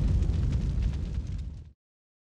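Deep, rumbling tail of a boom sound effect on the logo sting, dying away and cutting off to silence near the end.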